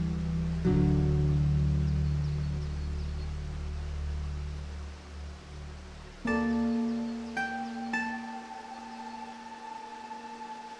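Slow solo classical guitar music: a low chord plucked just under a second in rings out and fades, then after a short lull a few new notes are plucked from about six seconds in and left to ring.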